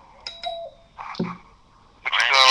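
A short electronic chime: a brief high beep with a lower tone under it. About a second in comes a brief fragment of a voice.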